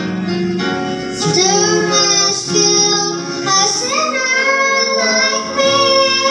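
A young girl singing a gospel song into a microphone over instrumental accompaniment, holding long notes.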